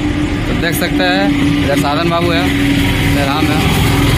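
A motor vehicle's engine running with a steady hum under a man's voice speaking in short phrases; the hum fades a little before the end.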